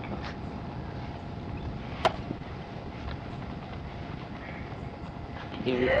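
Steady low background rumble with one sharp click about two seconds in; a man's voice starts speaking near the end.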